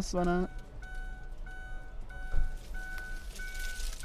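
A faint electronic beep repeating a little under twice a second over a steady low hum, with one soft thump about two and a half seconds in.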